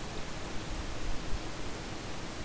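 Steady hiss of background noise from the recording microphone, with a faint steady hum underneath and no distinct clicks.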